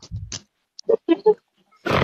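A person's voice making about three short sounds in quick succession around the middle, after a brief low rumble at the start; ordinary speech begins at the very end.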